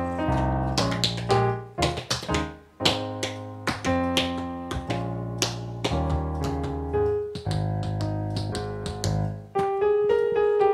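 Piano-voiced digital keyboard playing a short solo passage of struck chords and melody notes. Near the end a saxophone comes in with a held note.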